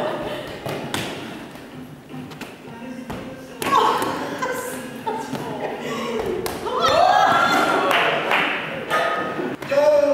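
Balls thudding and slapping into hands as a group throws and catches them, with people's voices in between.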